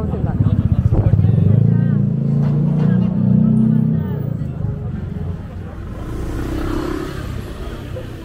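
A motor scooter passing close by, its small engine running loudest about a second in and fading away after about four seconds.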